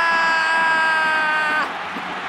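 A football commentator's long, held goal shout, its pitch sinking slowly, cutting off about one and a half seconds in, over the noise of a cheering stadium crowd.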